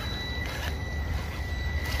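Small brushed electric motor and speed controller of a 1/18-scale RC crawler truck running at low throttle, giving a steady high whine over a low rumble.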